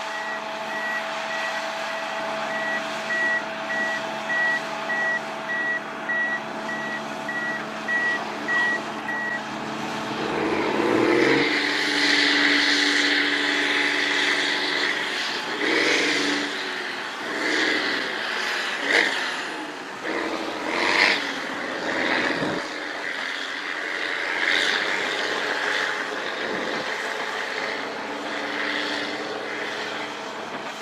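Crawler bulldozer's reverse alarm beeping steadily, about two beeps a second, over its running diesel engine; the beeping stops about nine seconds in. The engine then revs up and down under load as the dozer works the slope, with a few sharp clanks.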